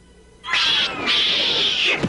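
Cartoon monkey's shrill, cat-like screech in two parts: a short cry about half a second in, then a longer one that cuts off suddenly at the end.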